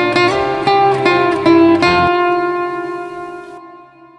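Zhongruan plucked: a quick phrase of notes, then a closing chord left ringing from about two seconds in and fading away as the piece ends.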